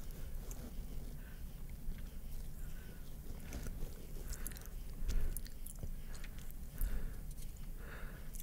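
Close-miked chewing of a sticky chunk of honeycomb: quiet wet clicks and smacks of teeth working the wax and honey, a little louder about five seconds in and again near seven seconds.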